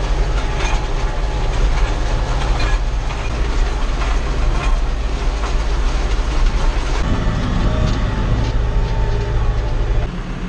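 Tractor engine running steadily, heard from inside the cab, with the dense rattling clatter of a tractor-mounted rotary hay tedder turning its tines. The engine note shifts about seven seconds in.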